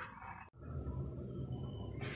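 Quiet room tone after an abrupt cut about half a second in: a steady low hum with faint, thin high-pitched whines.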